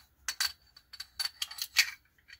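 Metal camera-mounting hardware clicking and clinking as an Arca-Swiss plate with a riser is fitted onto an L bracket: several sharp clicks, the loudest near the end, one of the early ones leaving a faint high ring.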